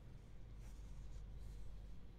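Quiet room tone with a low steady hum and a few faint scratchy rustles, about two-thirds of a second in and again a little past the middle.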